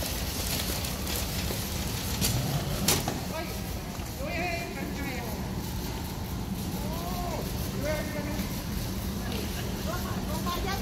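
Airport terminal hall ambience: a steady low rumble, two sharp clicks a couple of seconds in, and voices of people talking a few times in the hall.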